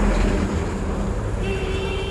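Road traffic running by, a steady low rumble of engines, with a short vehicle horn toot near the end.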